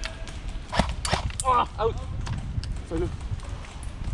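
Short shouted calls from men's voices, with a few sharp clicks or snaps about a second in.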